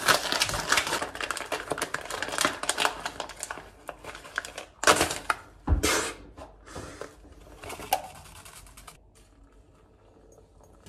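Paper coffee filter crinkling as it is opened and pressed into a plastic pour-over cone, then a few sharp knocks and the rustle of a paper coffee bag as grounds are tipped in. It goes quieter near the end.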